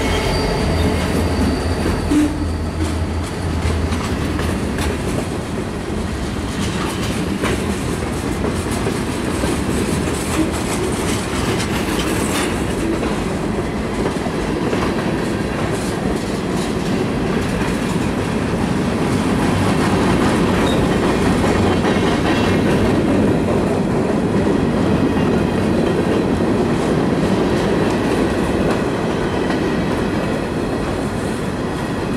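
A freight train passing close by. The diesel locomotive's engine hum fades over the first few seconds, then hoppers, tank cars and boxcars roll past with steady wheel-on-rail noise and a clickety-clack over the rail joints.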